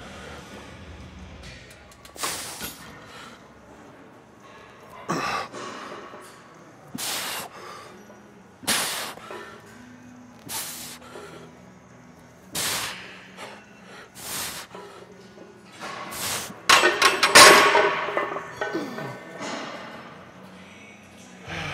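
A weightlifter's sharp, forceful breaths during a barbell bench press set, one roughly every two seconds with each rep, over faint background music. Near the end comes a louder, longer burst of strained breathing and noise as the set finishes.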